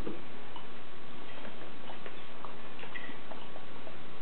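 Steady background hiss with faint, scattered small clicks from a baby mouthing the rim of a plastic cup.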